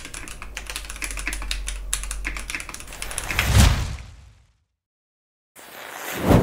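Fast typing on a custom mechanical keyboard with a clear polycarbonate case and very tactile switches: a dense run of keystroke clicks. About three and a half seconds in, a brief louder swell takes over and fades to silence, and sound returns just before the end.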